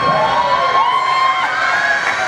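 Wailing, siren-like sound effect in the routine's dance music, several overlapping tones sliding up and down in pitch, with the bass dropped out underneath.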